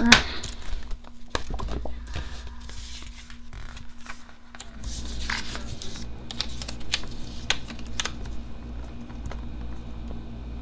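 Paper sticker sheets being handled: light rustling, small taps and clicks, and a sticker peeled off its backing and pressed down onto a planner page.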